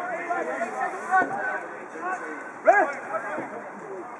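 Voices shouting and calling out across a football pitch, several short calls at a distance, with one louder brief shout nearly three seconds in.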